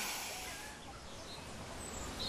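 Quiet outdoor ambience: a low steady hiss with a faint, brief bird chirp about halfway through.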